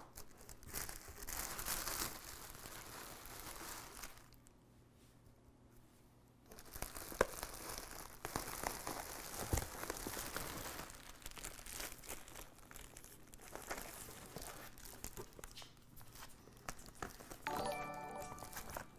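Bubble wrap and plastic packing liner crinkling and rustling as hands pull them out of a cardboard shipping box. There is a pause of about two seconds around four seconds in, and a few sharp crackles in the second stretch.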